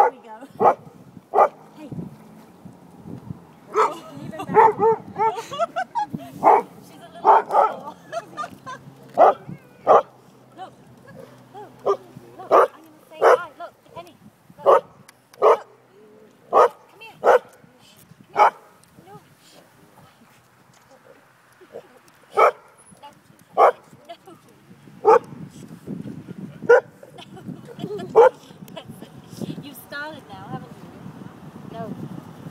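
A dog barking over and over, short sharp barks mostly about a second apart, with a pause of a few seconds past the middle. The dog is alarmed by a remote-control sea-monster model swimming close to the bank.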